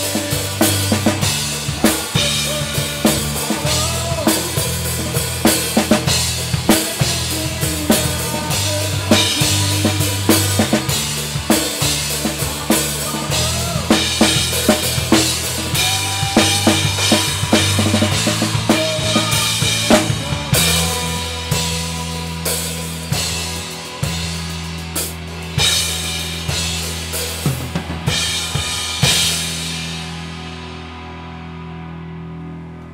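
Acoustic drum kit played live and close up, with kick, snare and cymbal strokes driving a rock song over the band's electric guitar and bass. About two-thirds of the way through the drumming thins out to sparser hits under held notes, and the song winds down at the very end.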